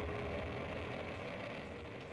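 The fading end of the outro's logo sting: a low rumbling swell with one faint held tone, dying away steadily.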